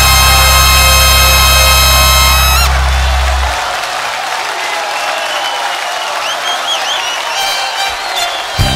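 Music ending on a long held chord that stops about three seconds in, followed by a crowd applauding and cheering, with a few whoops near the end.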